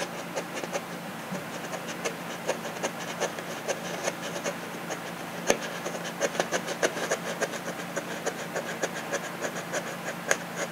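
Hobby knife blade pushed straight down into balsa-sheeted foam again and again to make a depth cut: a quick, uneven run of small crisp clicks and crunches, a few a second, with one louder click about halfway. A steady low hum runs underneath.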